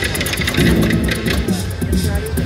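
Electronic game music with a fast, steady beat playing from a prototype Hot Wheels pinball machine during play.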